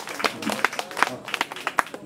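Scattered, irregular hand clapping from a small audience, a dozen or so separate claps rather than a dense applause, with faint voices underneath.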